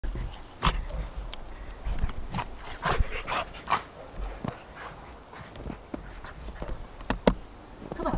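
A dog making short whimpers and yips, among scattered sharp clicks and crunches.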